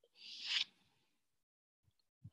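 A short breathy hiss of about half a second, swelling and then cutting off: a person's breath close to the microphone.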